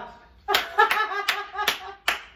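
Hands clapping: about four sharp claps, starting about half a second in, with a woman's voice over them.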